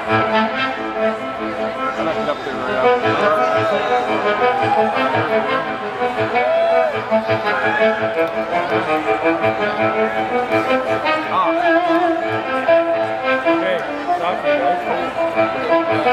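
Live blues-rock band playing loud: an electric guitar lead with bent notes over bass, drums and keyboard.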